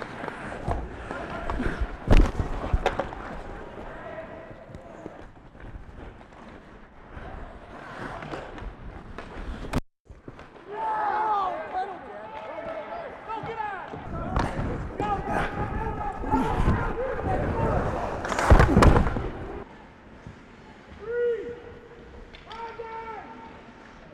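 Ice hockey play heard through a microphone worn by a player: indistinct shouts and calls from players on the ice, with the scrape and clatter of skates and sticks. There are two loud sharp knocks, one about two seconds in and one about three-quarters of the way through, and the sound cuts out for a moment near the middle.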